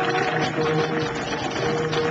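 Flamenco zapateado footwork: a dense run of rapid stamps and heel clicks from the dancers' shoes on the stage, with a steady held note of the accompaniment beneath it.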